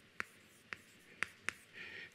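Chalk writing on a chalkboard: a few sharp ticks as the chalk strikes the board, about four in two seconds, with faint scratching between.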